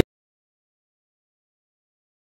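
Silence: the music cuts off abruptly at the very start, then nothing is heard.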